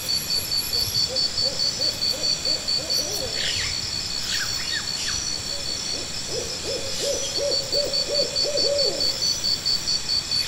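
Two runs of short, quick hooting calls, a brief one near the start and a longer one in the second half, over a steady pulsing insect trill, with a few short bird chirps in between.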